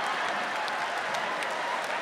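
Live audience applauding, a steady patter of many hands clapping.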